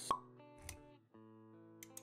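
Intro sound effects over soft music: a sharp pop right at the start, a softer low thud about two thirds of a second later, then sustained synth-like tones with a few light clicks near the end.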